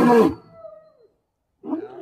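White lion roaring: one roar ends a fraction of a second in, trailing off with a faint falling tone, then after a short silent gap the next roar starts near the end.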